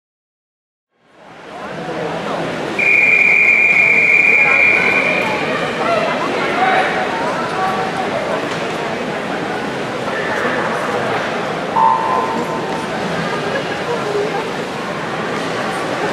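Crowd noise echoing in an indoor pool hall fades in after about a second of silence. About three seconds in, a long, steady referee's whistle calls the swimmers onto the blocks. About twelve seconds in, the electronic start signal beeps once, and the crowd noise carries on.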